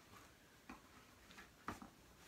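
Faint, irregular clicks and light knocks of things being handled and set into a suitcase as it is packed, the loudest a sharp tap near the end, over an otherwise near-silent room.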